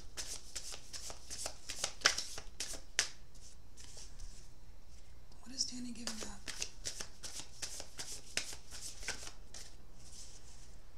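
A deck of tarot cards being shuffled by hand: quick runs of flicking card sounds in two spells, with a quieter pause in the middle.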